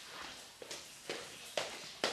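A person's footsteps walking, about two steps a second, growing louder near the end as they come closer.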